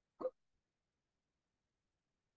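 A single brief vocal syllable from a person, a clipped sound a quarter-second in, with near silence on the gated call audio for the rest.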